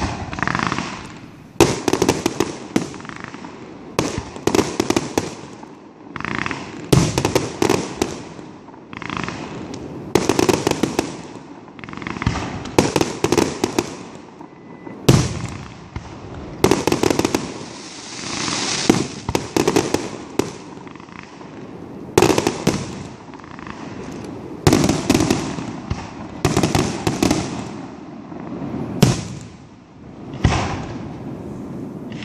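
Aerial firework shells bursting one after another, a sharp bang every second or two, each trailing off before the next.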